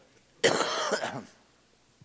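A man's single harsh cough into a handheld microphone, about half a second in and lasting under a second.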